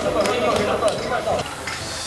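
Indistinct voices calling out, with a few light knocks, dropping quieter after about a second and a half.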